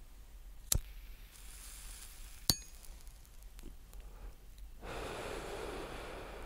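Two sharp clicks, then a long breathy exhale starting about five seconds in: someone using a vape and blowing out the vapour.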